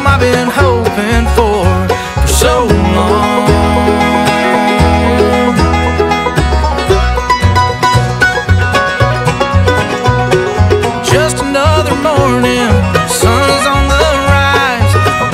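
Bluegrass band playing an instrumental passage: banjo, acoustic guitar and fiddle over a steady walking bass line.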